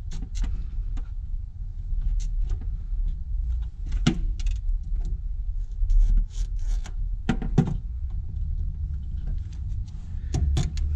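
Fuel hoses and their metal fittings being handled and pushed together by hand, giving scattered clicks and small rattles, with two louder knocks about four and seven and a half seconds in, over a steady low rumble.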